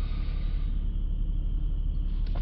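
Land Rover Discovery 4's engine idling, a steady low rumble heard from inside the cabin.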